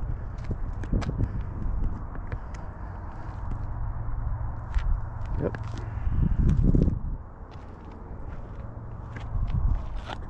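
Footsteps on pavement over a steady low rumble, with scattered light clicks and a short spoken "yep" about five seconds in.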